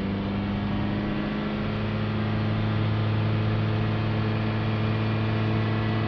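Ford Transit Connect 1.5 diesel engine held steady at about 3000 rpm, heard from inside the cab as an even, steady drone. The revs are being held to push freshly injected DPF cleaning fluid through the blocked diesel particulate filter and bring its back pressure down.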